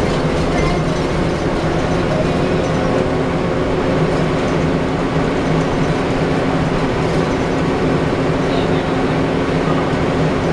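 Inside a 2010 Gillig Low Floor BRT transit bus under way: the rear-mounted Cummins ISL diesel engine runs with a steady, even hum along with road noise in the cabin.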